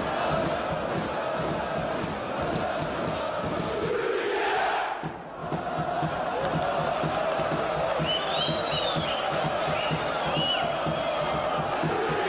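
Large football crowd in stadium stands, chanting together, dipping briefly about five seconds in.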